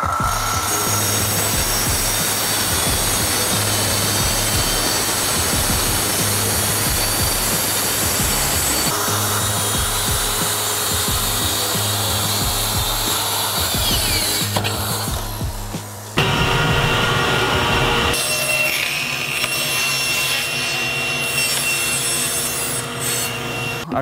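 Festool plunge track saw cutting through a plywood sheet along its guide rail, with its dust extractor hose attached. About fifteen seconds in, the blade spins down with a falling whine, and a second stretch of saw noise follows.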